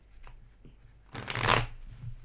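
A deck of tarot cards being shuffled by hand: a few faint card taps, then one loud rush of cards about a second in, lasting about half a second.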